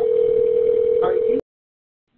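One ring of a telephone ringback tone heard down a phone line: a 911 call ringing through before it is answered. The steady tone cuts off sharply about a second and a half in.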